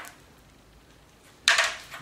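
A short hush, then a single sharp click of flint against stone about a second and a half in, as the flint core is set back on the anvil stone.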